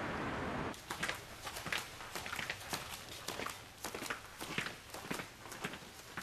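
A steady hiss that cuts off abruptly under a second in, followed by a run of irregular light clicks and taps, several a second.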